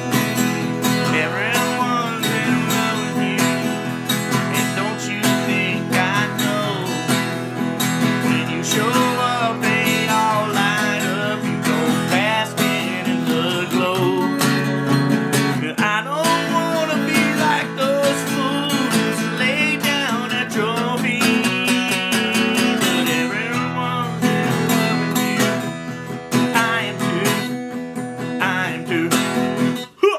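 Acoustic guitar strummed steadily in a country-style accompaniment, played with a PykMax thumb-held plectrum, while a man sings along.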